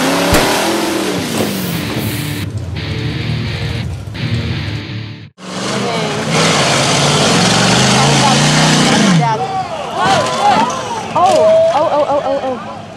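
Lifted Jeep's engine revving hard with mud spraying as it is driven through a mud pit, in two loud stretches broken by an abrupt cut about five seconds in. In the last few seconds, people shout and yell.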